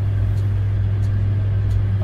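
A steady low hum with a few faint ticks over it.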